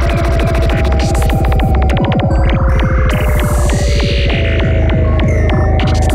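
Psytrance track with a fast, throbbing rolling bassline and kick, over synth tones that glide slowly down in pitch, and a rising sweep about halfway through.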